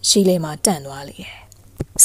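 Only speech: a woman's voice narrating a story in Burmese, with a short click near the end.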